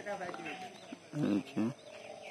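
People's voices in the background, with two short, louder voiced sounds a little past a second in, and faint bird chirps.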